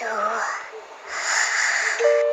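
Cartoon snoring from a sleeping rabbit: a falling whistled breath, then a long wheezy hiss.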